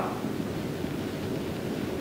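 Steady hiss and background noise of a recording, with no distinct event, in a pause between spoken phrases.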